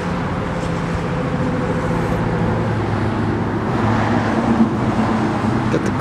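Steady, even hum of a running vehicle engine with road traffic noise, no distinct events.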